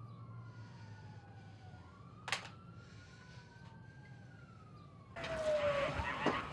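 Distant police sirens wailing, several overlapping, their pitches slowly rising and falling. A single sharp click comes about two seconds in, and a louder rush of noise starts near the end.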